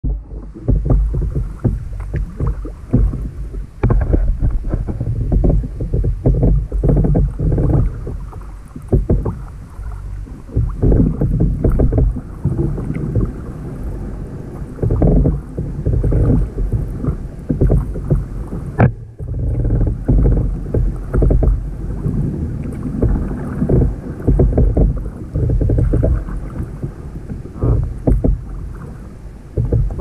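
A sea kayak being paddled through floating seaweed: water washes against the hull in uneven surges with each paddle stroke, over a dull low rumble. A single sharp knock comes about 19 seconds in.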